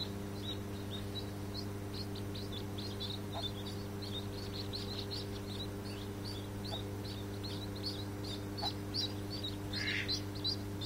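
Mallard ducklings peeping continually, a few short high peeps a second, over a steady low hum.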